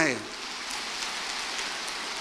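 A steady, even hiss with no pitch, coming in suddenly as the speech stops and holding level.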